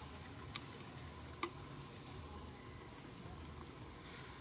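Insects droning steadily in two high, even tones, with two short clicks about half a second and a second and a half in.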